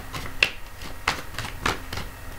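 A deck of oracle cards being shuffled by hand: crisp slaps of cards against each other, about three in two seconds at uneven spacing.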